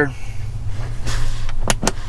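Two sharp clicks in quick succession near the end, the auxiliary-light push-button switch being pressed on, over a steady low hum and some rustling handling.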